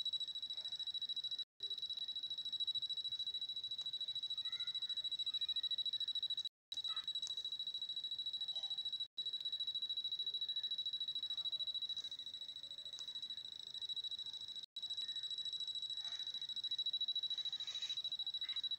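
A steady high-pitched electronic whine, one unchanging tone, broken four times by very short dropouts.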